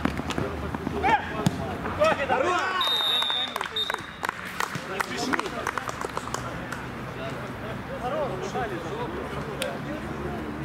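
Players shouting, with sharp knocks of a football being struck, and one steady blast of a referee's whistle lasting about a second, about three seconds in. The whistle comes as the goalkeeper goes down and before a restart from the centre circle, which marks it as signalling a goal.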